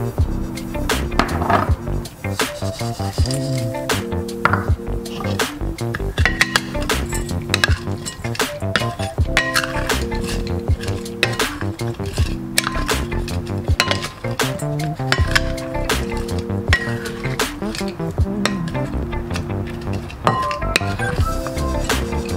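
Background music with repeated clinks and knocks of wooden utensils against a glass bowl as smashed cucumber salad is tossed.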